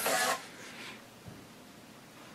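DAB radio broadcast audio from the computer's loudspeaker cuts off about a third of a second in, leaving only faint background hiss.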